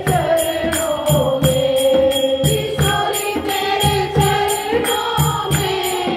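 A group of women singing a Hindu devotional bhajan together into a microphone, with hand-clapping keeping a steady beat.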